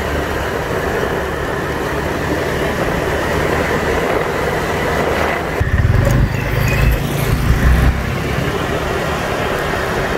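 Honda PCX 150 scooter being ridden along a road: its single-cylinder engine running under steady road and wind noise, with a heavier low rumble from about six to eight seconds in.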